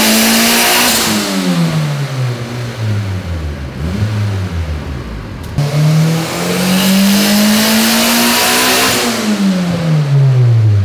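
Turbocharged Honda B18 non-VTEC four-cylinder pulling under load on a hub dyno. The note climbs at full throttle, then falls away as the revs drop off. A second pull starts about halfway, climbs again, and falls away near the end.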